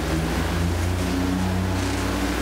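Soft background music of sustained low held notes over a steady low rumble, with no speech.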